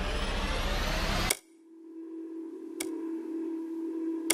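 Trailer sound design: a dense rising swell that cuts off abruptly with a sharp hit about a second in, followed by a low steady hum with a faint tick.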